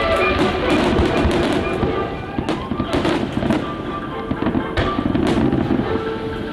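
Fireworks going off over a patriotic show soundtrack: a string of sharp bangs and crackles about halfway through, and more near the end, with the music running steadily underneath.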